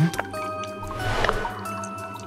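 Cartoon sound effect of water dripping and trickling, with a brief hissing swell about a second in, over background music with held notes.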